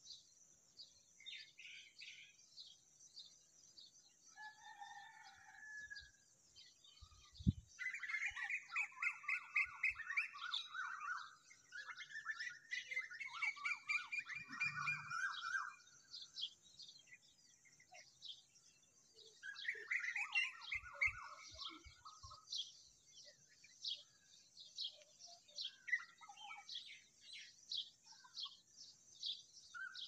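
Small birds chirping: short high chirps repeat throughout, with louder runs of rapid, lower chirps from about eight to sixteen seconds in and again around twenty seconds. A few soft knocks, the sharpest about seven seconds in.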